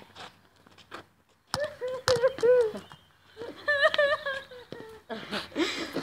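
A boy's voice making two drawn-out, wavering shouts that the recogniser caught no words in, after about a second of near silence. A sharp knock comes just as the first shout starts.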